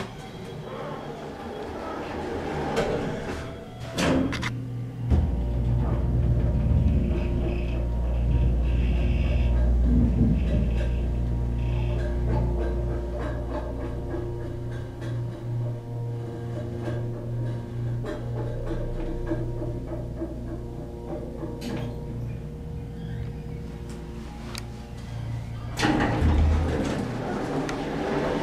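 Elevator ride: a knock as the door closes about four seconds in, then the machine starts with a strong steady low hum that carries the car, easing off after about fourteen seconds. A thump and rattle near the end as the door opens at the floor.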